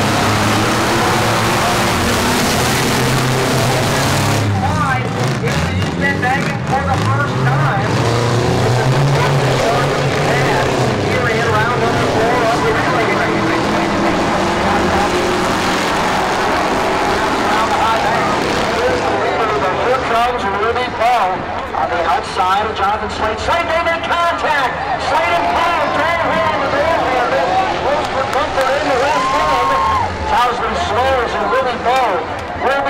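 Race car engines running and revving on the track, rising and falling in pitch, loudest in the first half. Spectators' voices close by come to the fore later.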